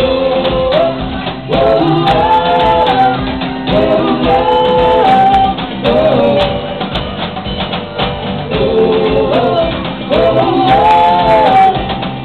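Live piano-bar music: a singing voice over piano and drums, with a steady beat and sung phrases that rise and fall.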